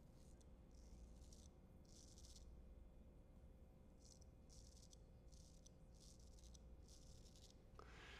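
Faint short scraping strokes of a Ralf Aust 5/8" straight razor cutting through lathered beard stubble on the cheek, about seven strokes with brief gaps between them.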